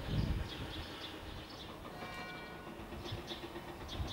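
Outdoor ambience with small birds chirping repeatedly over a low rumble, which is loudest just at the start. A brief steady tone sounds about halfway through.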